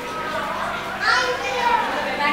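Children's voices talking and calling out, with a loud, high-pitched exclamation about a second in.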